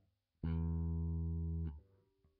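Fender Jazz Bass played solo: a single plucked note about half a second in, held steady for over a second, then damped with a small click of the string.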